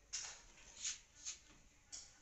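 Four short, quiet rustling scrapes of hands handling an electric iron and the things around it.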